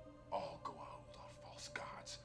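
Quiet dialogue from the TV episode: a man's voice saying "All Goa'uld are false gods" over a steady, low music drone.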